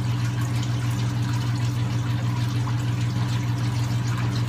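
Steady low electrical hum with a faint watery hiss from running water-pump and filtration equipment, unchanging throughout.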